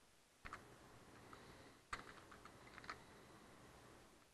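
A few faint computer keyboard keystrokes: one about half a second in, a sharper one near two seconds, and a small cluster of taps just before three seconds.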